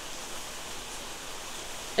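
Steady hiss of rain falling hard, heard through an open window.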